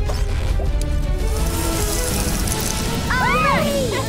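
Cartoon background music with a hissing, whooshing sound effect through the middle, as the pet changes into a dragon that puffs out smoke. Near the end comes a short rising-and-falling high cry.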